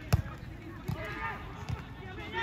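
Rugby players shouting calls during open play, with one sharp thud just after the start and two softer knocks later.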